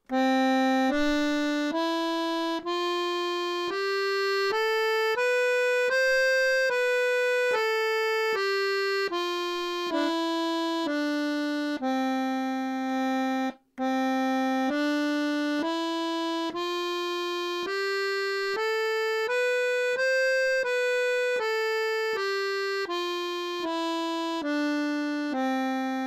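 Sonola piano accordion played on its treble keyboard: a C major scale from middle C up one octave and back down, one even note at a time, played twice with a short break in between.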